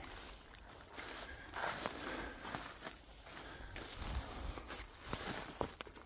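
Footsteps through dry leaf litter and twigs on a forest floor: irregular rustling steps with a few soft low thumps.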